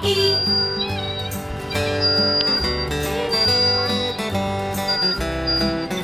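Instrumental passage of a children's song, with plucked acoustic guitar and a steady bass line.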